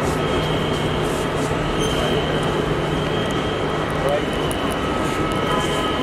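Steady din of a busy airport kerbside: a constant hum of traffic and machinery with faint chatter of people in the crowd, no single sound standing out.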